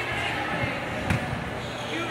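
A basketball bouncing on a wooden gym floor, a few thuds about half a second and a second in, over the chatter of voices in the hall.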